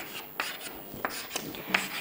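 Chalk scratching on a chalkboard as a formula is written, in several short strokes.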